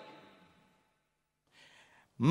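Near silence in a pause between a man's spoken phrases, with a faint intake of breath near the end.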